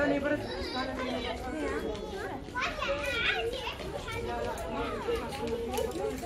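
Children's voices talking and calling out over one another, with background chatter.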